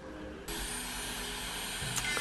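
Faint room tone, then about half a second in a steady electric whir starts abruptly: an electric manicure drill (nail file) running at a nail.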